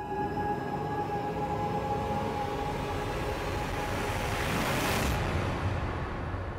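Dramatic soundtrack riser: a swelling rush of noise over a low rumble, building to a peak about five seconds in, then dropping away.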